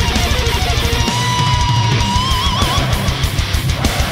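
Melodic death metal recording: rapid double-bass kick drumming under distorted guitars. About a second in, a lead guitar holds a long high note and then shakes it with a wide vibrato.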